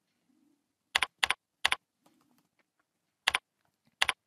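Computer keyboard keys being pressed as a word is typed in: a few separate keystroke clicks, a cluster about a second in and another near three seconds.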